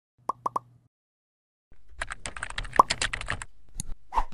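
Intro-animation sound effects: three quick pops, then a rapid run of computer keyboard typing clicks starting just under two seconds in, and a single click near the end.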